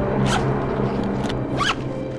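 A shoulder bag's zipper being pulled shut in two quick strokes about a second apart, over soft background music.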